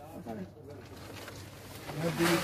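Quiet outdoor background with faint voices.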